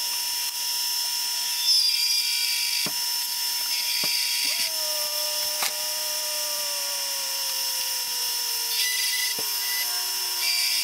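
Lathe spinning a clear perspex (acrylic) cylinder while a hand-held turning tool cuts it into shape, peeling off plastic shavings. The cutting comes as two spells of hissing scrape over the machine's steady hum, with a tone slowly falling in pitch through the second half.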